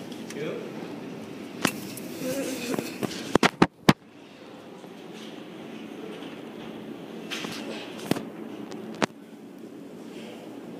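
Quiet indoor room tone with a steady low hum, broken by several sharp clicks and knocks, including a quick cluster about four seconds in. Faint voices come through in the first few seconds.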